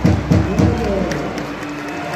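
Ice hockey arena crowd noise: a fast thudding beat, about four a second, fades out about a second in, leaving the murmur of the crowd.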